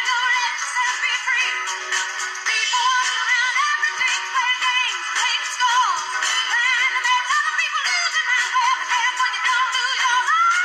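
A recorded song with a woman singing lead over a band, played from a laptop and heard through its small speakers. It sounds thin, with almost no bass.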